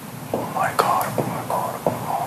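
Whispered speech: a man talking in a low, breathy whisper in short phrases.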